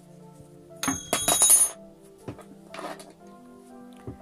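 Steel scissors snipping the cord, a sharp cut with a metallic clink about a second in, followed by a lighter click and a short rustle of handling near three seconds, over soft background music.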